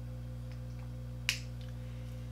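A single sharp click of a LYS Beauty matte lipstick's cap about a second in, over a low steady hum.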